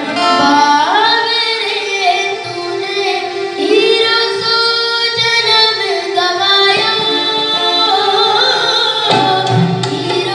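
A Hindi devotional bhajan sung live by a child's high voice into a microphone, with long held notes that waver in pitch, accompanied by harmonium and acoustic guitar. Hand drums join near the end.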